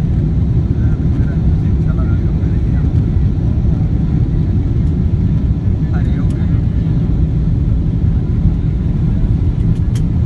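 Steady loud low rumble heard inside a jet airliner's cabin during the landing roll, as the plane slows on the runway with its spoilers up. Faint voices come through a few times.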